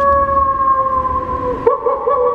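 A man's wolf-like howl, held as one long note that sags slightly in pitch, breaking off near the end and starting up again.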